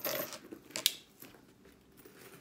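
Metal chain of a handbag strap jingling as it is clipped onto the bag, with one sharp metallic click just under a second in.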